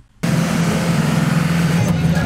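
A heavy vehicle's engine drones steadily under a loud rushing noise. It cuts in suddenly a moment after the start.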